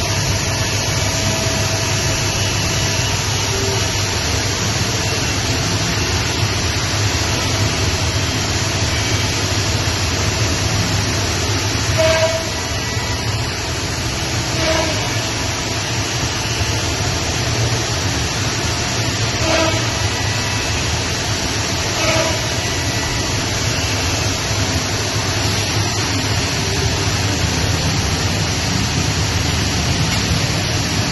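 Masterwood Project 416L CNC machining center running: a loud, steady rushing machine noise, with a few short tones partway through.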